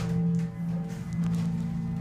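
Westinghouse hydraulic elevator car in motion, giving a steady low hum with a few faint steady higher tones.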